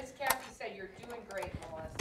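A woman's quiet, indistinct voice, low and murmured, with a light knock about a second and a half in.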